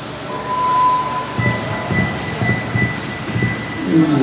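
Electronic start signal from the race timing system, a short lower beep followed by a long higher tone, as a field of electric 1/10-scale touring cars pulls away from the grid with motor whine and tyre noise.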